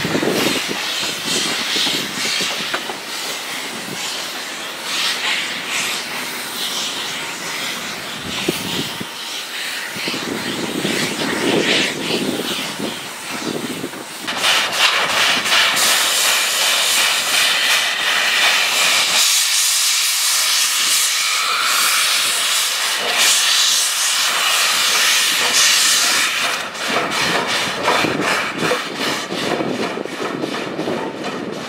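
Chinese JS-class steam locomotives hissing steam: first one moving tender-first with its cylinder cocks blowing, then another beside coal wagons with a louder, brighter steam hiss. Near the end come quick even exhaust beats as it gets under way.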